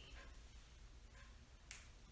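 Near silence, room tone, broken by a single brief, sharp click about one and a half seconds in.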